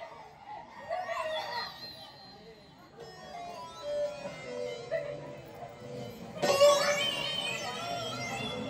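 Live folk-theatre music: singing with instrumental accompaniment, softer through the middle, with louder voices coming in suddenly about six and a half seconds in.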